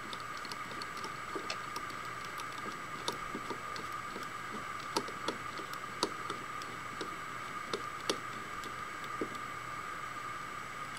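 Small, irregular clicks and ticks of a micrometer being handled and closed on a turned part held in a lathe chuck. A steady whine runs underneath.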